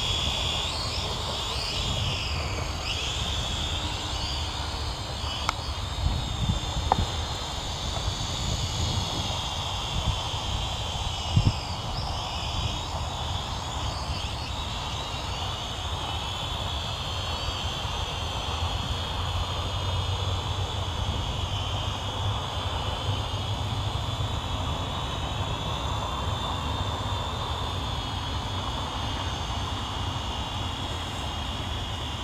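Small quadcopter drone's propellers whining, the pitch wavering up and down as it manoeuvres, over a low rumble. A few brief knocks come in the first dozen seconds, the loudest about eleven seconds in.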